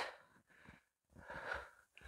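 A woman's faint, short breath about a second and a half in, taken while exerting herself in a dumbbell side-lunge exercise; the rest is near silence.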